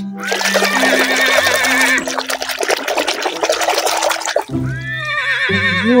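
A horse whinnying with a long wavering call, over steady background music. Near the end a voice gives a drawn-out 'whoa' that falls in pitch.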